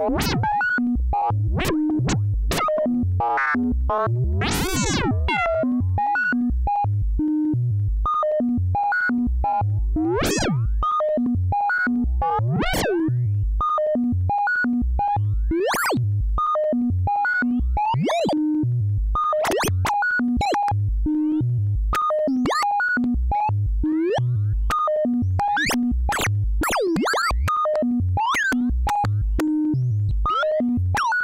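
Make Noise modular synthesizer, its DPO dual oscillator playing a steady run of short pitched notes. Every few seconds some notes swell into bright, swooping, clangy tones. This is frequency modulation that grows stronger as the modulating oscillator's pitch nears the FXDf filter band chosen to pass it.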